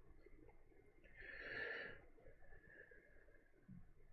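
Near silence in a small room, broken by one soft breath out through the nose lasting under a second, about a second in.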